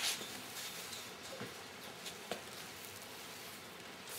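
Faint room tone with a steady hiss and a couple of faint clicks.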